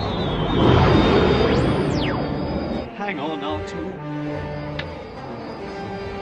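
Film soundtrack of a starfighter racing down a trench. A rushing engine roar swells over the first couple of seconds, with a sharp falling whine as a ship streaks past. Orchestral music with held notes then takes over, with a brief voice about three seconds in.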